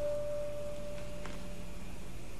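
Background music score holding a single sustained note, which fades away near the end over a faint low hum.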